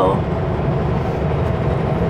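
Steady low drone of a Kenworth W900L semi truck's engine and road noise, heard inside the cab while cruising on the highway.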